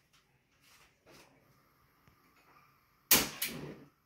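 Gas stove burner being lit: two sharp igniter clicks about a third of a second apart near the end, after a few faint handling sounds.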